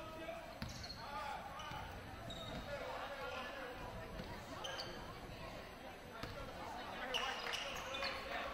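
Basketball game in a gym: a basketball bouncing on the hardwood court and sneakers squeaking in short high chirps several times, over echoing chatter of players and spectators.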